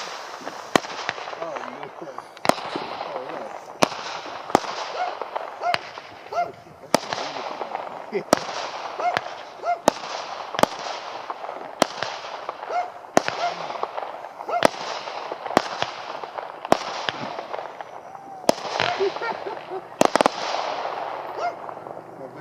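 A multi-shot aerial fireworks cake firing a steady string of shots, about one every 0.7 seconds. Each shot is a sharp report, and hissing and crackling from the bursts fill the gaps between.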